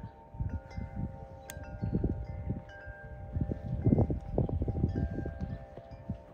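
Wind chimes ringing: several overlapping tones that hang on, with fresh strikes every second or so, over wind gusting on the microphone.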